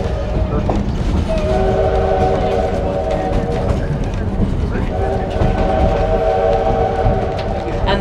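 Steam locomotive whistle sounding two long blasts, each a steady chord of several notes lasting about two and a half seconds, over the steady low rumble of the train rolling.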